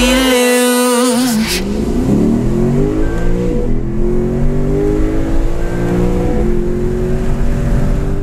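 Electronic music ends about a second and a half in, and then a car engine accelerates hard through the gears, its pitch climbing and dropping back at two gear changes.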